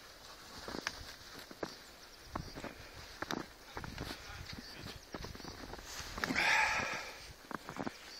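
Footsteps crunching in fresh snow at a walking pace, about one step every second, with a louder, longer scrunch of snow about six seconds in.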